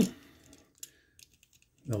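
A few faint, short plastic clicks as the legs of a small 1984 G1 Brawn minibot toy are swung down during its transformation.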